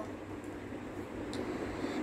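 Quiet room tone: a steady faint hiss with a low hum underneath, no voice.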